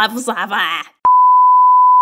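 A censor-style bleep: one steady, loud beep tone that starts abruptly about a second in, with a click, and lasts about a second, cutting off a rush of garbled speech.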